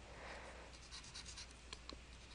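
Faint scratching and a few light taps of a stylus writing on a tablet screen, over a low mains hum.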